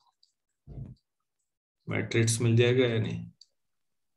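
A man's voice speaks briefly in the middle, about a second and a half long, after a short low sound and a few faint clicks near the start.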